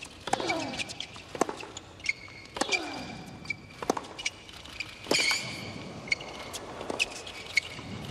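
Tennis rally on a hard court: racquet-on-ball strikes and ball bounces at a steady back-and-forth pace, a player's grunt falling in pitch on every other shot, and brief shoe squeaks.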